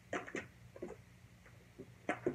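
Handling noises from a slime and its small container: a few short clicks and smacks, two close together near the start and fainter ones later.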